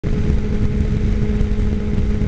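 Sport motorcycle cruising at steady freeway speed: the engine holds one steady note with no revving, under a heavy rumble of wind and road noise on the bike-mounted microphone.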